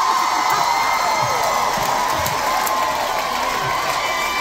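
Concert audience cheering and screaming, a dense mass of high, held voices.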